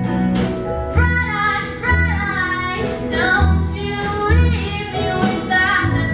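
A woman singing a slow song to her own acoustic guitar, with an orchestra's strings accompanying and low bass notes sounding under the voice.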